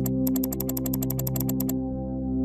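Rapid clicking of a computer mouse, about ten clicks a second, that stops shortly before the end. The clicks sound over soft synthesizer background music.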